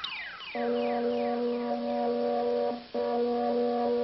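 Synthesizer sound effects on an educational cartoon soundtrack: a few falling whistle-like glides, then a steady electronic chord held for about two seconds, a brief break, and the same chord held again.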